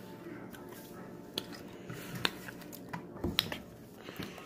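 Faint handling noise at a tabletop: a few short, light clicks and taps spread across a few seconds.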